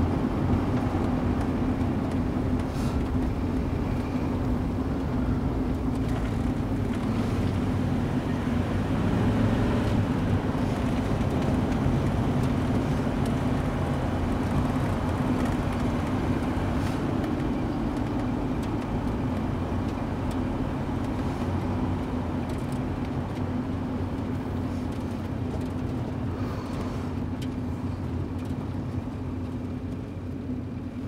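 A car driving at a steady speed: a continuous low engine and road rumble that slowly gets quieter in the second half.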